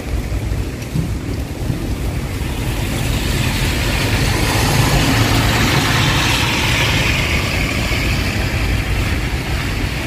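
Outdoor background noise: a low, uneven rumble, with a hiss that swells through the middle and eases off again.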